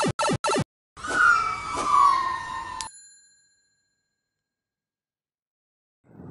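An edited-in electronic sound effect: three short beeps, then a longer tone sliding down in pitch that cuts off suddenly into a brief bell-like ring.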